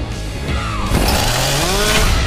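Loud, heavy trailer music, with a motor revving up over it in the second half, its whine rising steadily in pitch.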